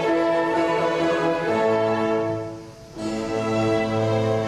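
Classical-era orchestra playing a symphony, violins leading over cellos in sustained notes. Just before three seconds in, the orchestra dies away to a brief near-pause, then comes back in at full strength with the low strings.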